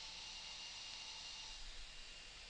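Faint steady background hiss with a faint high steady tone, and no distinct event: room tone.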